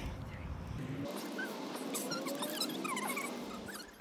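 Many short, high-pitched animal squeaks and chirps, beginning about a second in.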